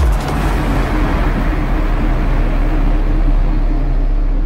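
Drum and bass track at a breakdown: the drums cut out at the start, leaving a held deep sub-bass note and a wash of noise that slowly dulls as it fades.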